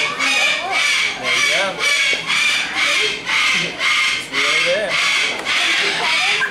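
A high-pitched pulsing sound repeating steadily about twice a second, with voices murmuring underneath.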